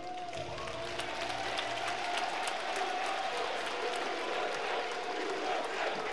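Gymnasium crowd applauding and cheering, the clapping breaking out at once and holding steady, with a long held whoop over it. It follows the end of the national anthem, with the color guard still holding the flags.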